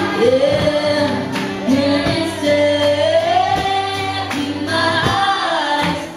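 Young female pop singer singing live into a handheld microphone, amplified through a PA, over a musical accompaniment with a steady beat; her melody glides up and down in long held notes.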